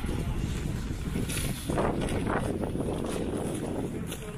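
Wind buffeting a handheld camera's microphone, a steady low rumble.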